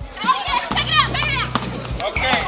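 Young people's excited voices shouting and calling out during outdoor play, over background music with a steady low bass that comes in under a second in.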